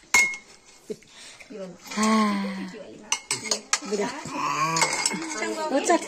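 Steel tumbler and ladle knocking against a metal kadai (wok) as they are handled: several sharp metallic clinks, the first just after the start ringing briefly, then a scatter of knocks later on, with a small child's voice between them.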